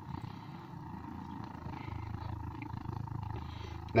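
Portable butane-cartridge heater's ceramic burner spluttering with an uneven, flickering rumble. This spluttering comes before the flame dies out.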